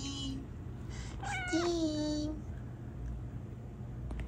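A domestic cat meowing once, a single call of about a second starting a little over a second in.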